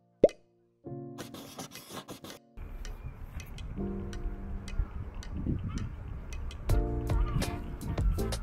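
A short, loud plop sound effect with a quick falling pitch, then background music that starts just under a second later. From about two and a half seconds in, a steady low rumble runs under the music.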